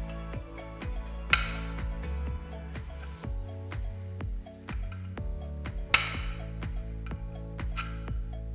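Background music with a steady beat. Over it come two sharp metallic clicks, one about a second and a half in and one about six seconds in: a neodymium magnet held in pliers snapping against the lock cylinder and the broken iron key.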